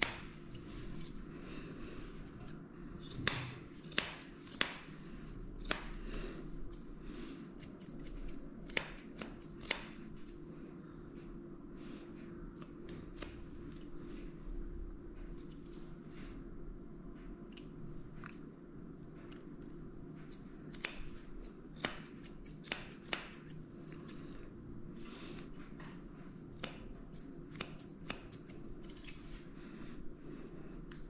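Grooming scissors snipping the hair around a dog's face: irregular sharp snips, sometimes several in quick succession, over a steady low hum.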